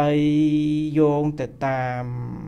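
A Buddhist monk's male voice chanting on a steady pitch: one long held note, a short break about a second and a half in, then a second held note.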